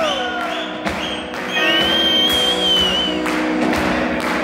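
Live rock band playing loudly: electric guitars, bass and drums. Through the middle a high held note wavers over the beat.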